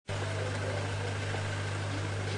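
Steady low hum of an idling engine, unchanging throughout, over faint outdoor background noise.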